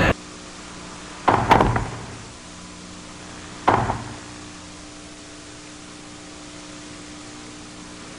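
Two tennis balls struck by rackets, about two and a half seconds apart, each a short sharp hit with a brief reverberant tail. Under them runs the steady hiss and hum of old match footage audio.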